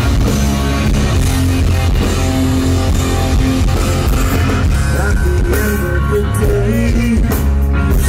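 Rock band playing live, loud and without a break: electric guitars, bass guitar and a drum kit.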